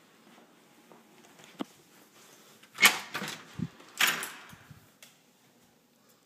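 A door between house and garage being opened and shut: a light latch click, then two loud knocks about a second apart, each with a short ringing tail.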